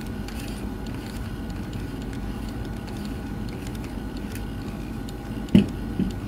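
Faint handling of a WiFi receiver's plastic end cap and rubber plug over a steady low room hum, with a few small clicks and one sharp knock near the end, when the cap is set down on the table.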